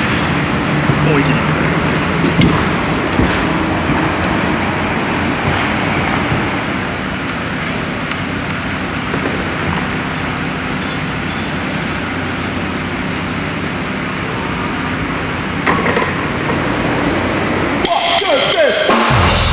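Indistinct voices over a steady rushing background noise, with no clear strikes or rhythm.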